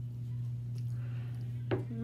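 A steady low hum, with a single sharp click near the end, followed at once by a brief voice-like 'mm' that falls in pitch.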